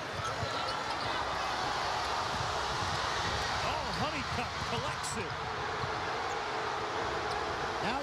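Sounds of a basketball game in a packed arena. A loud, steady roar from the home crowd is the main sound, with sneakers squeaking on the hardwood court in short clusters, about four seconds in and near the end, and the ball bouncing.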